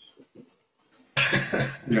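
A man coughing, a loud, harsh burst a little over a second in, lasting under a second.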